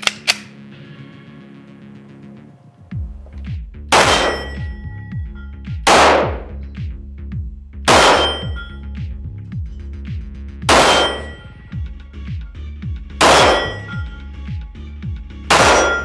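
Heckler & Koch P30L 9mm pistol shots on steel targets, each shot followed by the clang and brief ring of the struck steel. There are two quick shots at the very start, then six more spaced about two to two and a half seconds apart.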